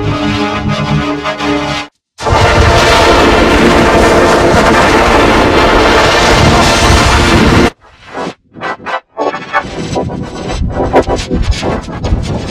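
Heavily effects-processed logo music. A pitched synth melody cuts off about two seconds in. After a brief gap comes a loud, dense wall of distorted noise lasting about five and a half seconds, then choppy, stuttering bursts with short dropouts.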